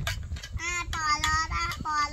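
A high-pitched voice holding about three short, slightly wavering notes, with a steady low rumble underneath.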